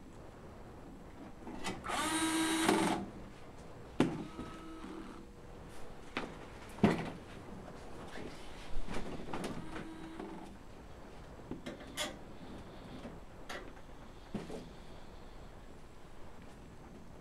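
A cordless drill/driver runs for about a second, driving a screw into the kiln's sheet-metal panel, with a fainter short run later. Between them come scattered knocks and clicks of the metal case and tools being handled, one sharp knock about seven seconds in as loud as the drill.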